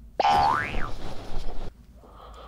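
A short pitched, whistle-like tone that starts suddenly, slides up in pitch and drops back within about a second, like a cartoon boing, followed by rough noise that stops about a second and a half in.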